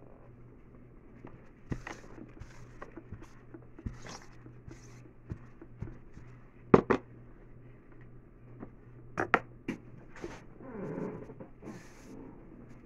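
Objects being handled and set down on a tabletop: scattered light clicks and knocks. The loudest is a pair of knocks about seven seconds in, followed by a quick run of clicks just after nine seconds and a short rustle around eleven seconds.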